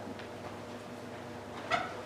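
Quiet room tone in a small room, with one brief high-pitched sound near the end.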